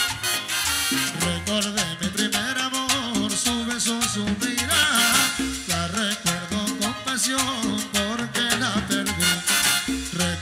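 Live Latin tropical dance band playing with saxophones, trumpet, bass and percussion, driven by a steady beat.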